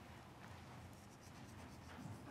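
Hands pressing a coarse salt, sugar and pepper rub into raw flank steak on a cutting board: faint rubbing and handling sounds.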